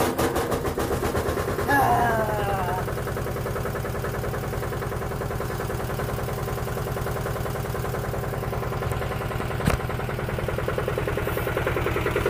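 Single-cylinder engine of a Buffalo 10 compact tractor idling steadily, freshly rope-started. A brief falling whine about two seconds in and a single sharp click near ten seconds.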